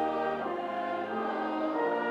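Church congregation and choir singing a hymn in slow, long held notes that change pitch a couple of times.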